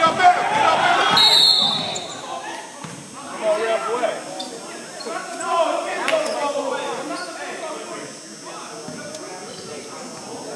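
Voices calling out in an echoing gym, with a basketball bouncing on the hardwood floor. A brief high-pitched note comes about a second in, and the noise is louder in the first couple of seconds before quieting.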